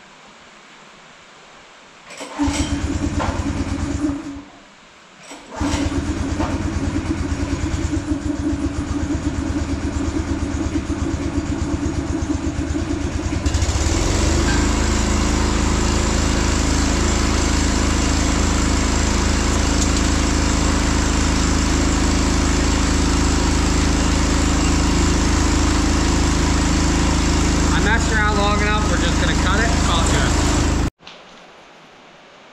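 A loud motor running steadily. It starts about two seconds in, cuts out for about a second, then starts again and runs on. Around the middle it becomes louder and fuller.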